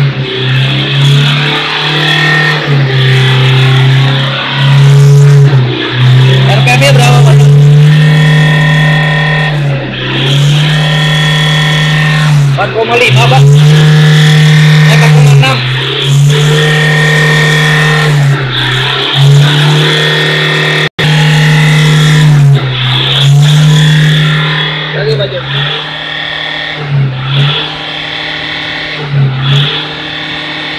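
Toyota Fortuner's turbodiesel engine revved hard and held at about 4,000 rpm. It is eased off briefly and brought back up again and again in a free-rev test while the exhaust is watched for smoke.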